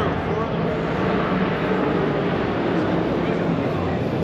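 Steady crowd chatter: many voices blended into a continuous hubbub, with no single sound standing out.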